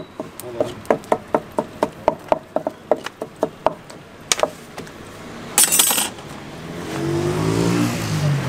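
A knife chopping on a wooden board, about four quick strokes a second, stopping after three and a half seconds; then one louder knock and a short scraping hiss. Near the end a passing vehicle's engine rises.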